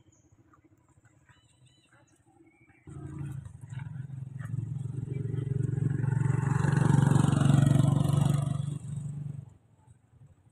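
A motor vehicle engine close by. It starts suddenly about three seconds in, grows louder to a peak, then drops and cuts off shortly before the end.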